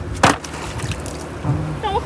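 A sea bass landing in a plastic bucket as it is dropped in, with one sharp slap about a quarter of a second in.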